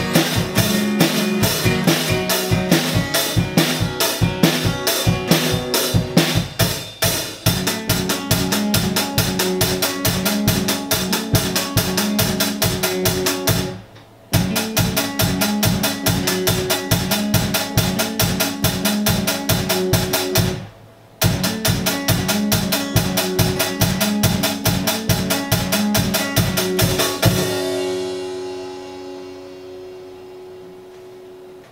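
Acoustic guitar strummed along with a drum kit playing a fast, steady beat, with two brief full stops in the middle. Near the end the drums stop and a last guitar chord rings out and fades.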